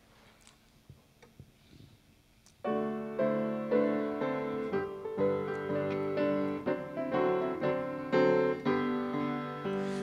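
A few faint knocks and shuffles, then about two and a half seconds in a piano keyboard starts playing the introduction to a hymn, in struck chords.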